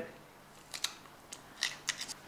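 A raw garlic clove being bitten and chewed: five or so faint, short crisp crunches, starting just under a second in.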